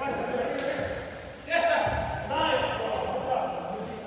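Indistinct voices of players calling out during an indoor soccer game, growing louder about one and a half seconds in.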